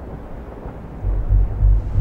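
Wind buffeting the microphone outdoors: a low hiss at first, then from about a second in a heavy, gusting low rumble.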